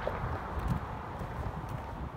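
Footsteps of someone walking on a paved road, a few irregular steps, over an uneven low rumble on the microphone.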